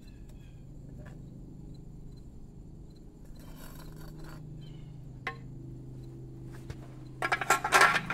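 A propane melting furnace's burner runs with a steady low hum while a steel spoon scrapes slag off the surface of molten aluminium in the crucible, with scattered light clinks. A louder burst of metal clatter comes near the end.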